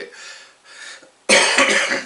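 A man coughs: one loud cough lasting most of a second, about a second and a half in, after a quieter first second.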